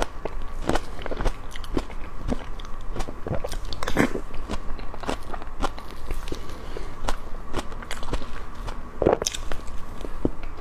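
Close-miked mouth sounds of a person eating soft whipped-cream cake: a run of wet mouth clicks and chewing, with the loudest bites about four seconds in and near the end. A faint steady high hum lies underneath.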